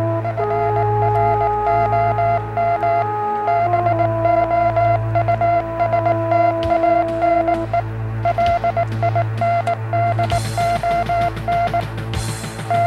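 Synthesizer background music: a steady low drone under held chords, with one high note beeping in a quick, uneven on-off rhythm like a radio signal.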